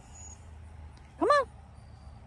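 Low, steady rumble of a distant engine, with one short, high call that rises and falls in pitch about a second and a quarter in.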